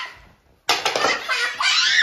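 Loud burst of laughter from several people, starting about two-thirds of a second in after a brief lull.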